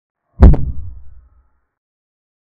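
A single deep boom sound effect: a sharp hit followed by a low rumble that dies away within about a second, accompanying a pawn move on an animated digital chessboard.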